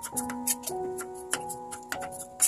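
Background music with held notes, over sharp, irregular clicks of a kitchen knife cutting through the firm rind of a wax gourd and tapping the wooden chopping board.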